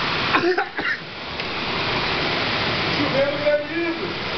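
Hailstorm: hail and heavy rain pounding down outside, a dense, steady hiss.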